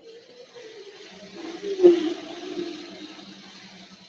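Recorded sound track playing from a Halloween animatronic prop's speaker: a rushing noise with a low hum beneath, starting suddenly and swelling to its loudest about two seconds in.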